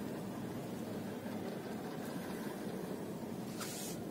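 Steady low rumble of a car idling in slow traffic, heard from inside the cabin, with a brief hiss near the end.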